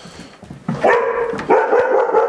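Young German Shepherd giving two drawn-out, high-pitched barks as it lunges on the leash toward another dog. The barking is reactive, aggressive behaviour toward the other dog.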